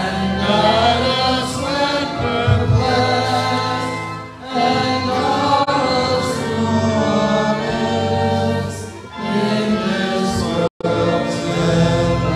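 Church congregation singing the closing hymn, voices in several parts over sustained low accompaniment. The sound cuts out completely for a moment near the end.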